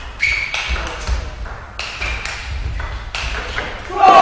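Table tennis rally: the ball strikes paddle and table in turn with sharp pinging tocks, about two a second.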